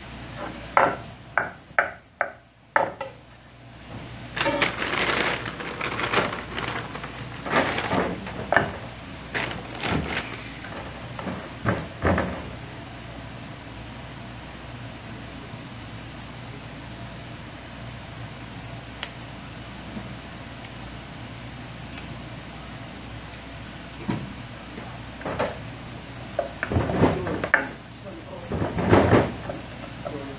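Kitchen prep on a wooden cutting board: a quick run of sharp knocks about a second in, irregular handling clatter through the first half, then heavier knife strokes on the board near the end as squid tentacles are cut.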